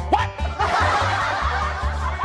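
A group of people laughing and cheering, starting about half a second in, over background music with a steady beat.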